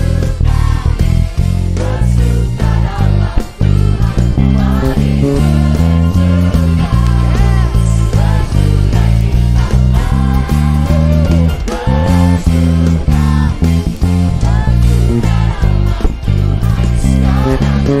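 Five-string Pedulla MVP5 electric bass playing a refrain bass line of steadily changing notes, along with a live worship band and singers after the song's key change up a half step.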